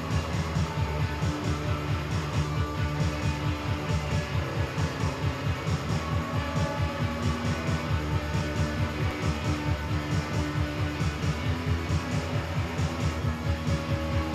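Live band music with guitar over a steady, evenly pulsing low beat, about three pulses a second.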